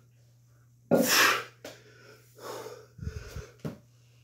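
A man breathing hard while exercising: one loud, sharp exhale about a second in, then a softer breath. A few dull knocks follow near the end.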